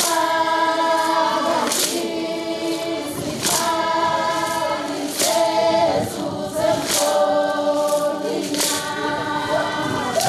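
A choir of several voices singing together in long held phrases, with a sharp percussive stroke keeping a beat about every second and a half to two seconds.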